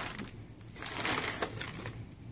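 Plastic packaging crinkling and rustling as hands dig through a cardboard box: a short burst at the start and a longer, louder one about a second in.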